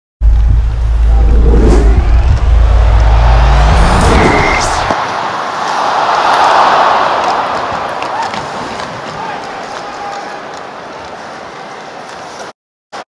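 Pack-reveal animation sound effects: a heavy low rumble with a rising sweep and whooshes for the first five seconds. Then the hockey highlight's arena crowd noise, which swells about six to seven seconds in and slowly fades.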